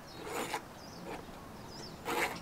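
Faint bird chirps in the background, a few short curling calls in the second half, with a brief soft rustle about half a second in.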